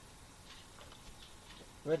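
Near silence: faint room hiss with a few soft ticks, then a man's narrating voice begins near the end.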